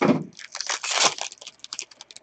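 A short knock at the start, then a quick run of crinkling and tearing as a trading-card pack's wrapper is ripped open.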